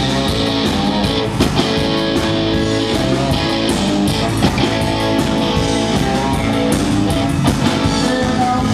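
Live band playing an instrumental passage: electric guitar over bass guitar and drums.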